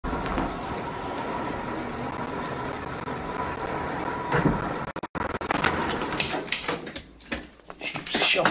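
A car's engine running steadily as the car rolls in. After a sudden break about five seconds in, there is a scatter of sharp knocks and clicks.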